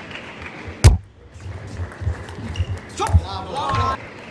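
Table tennis rally: a sharp, loud crack of the celluloid-type plastic ball off a paddle or the table about a second in, then lighter ball hits and footfalls. Short high squeals near the end.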